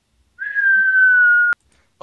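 A falling-whistle sound effect: a single whistled note, the cartoon sign of something dropping from above. It glides slightly downward for about a second and cuts off suddenly.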